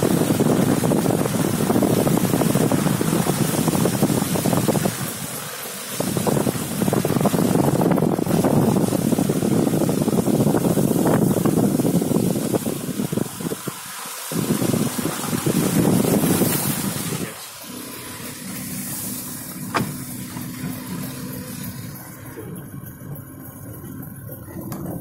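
Car driving on a snowy road, heard from inside: a loud, rushing wind and road noise that drops away briefly a few times and turns quieter about two-thirds through, leaving a low steady hum.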